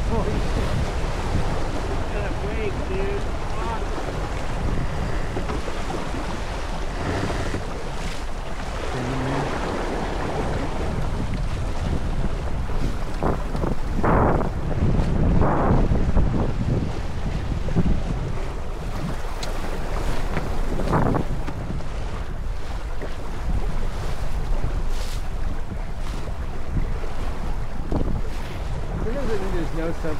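Wind buffeting the microphone over water rushing along the hull and wake of a sailboat under way, with a few louder rushes in the middle.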